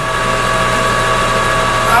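Metal lathe running at steady speed during single-point threading. Its motor and gear train give a steady hum with a few steady whining tones.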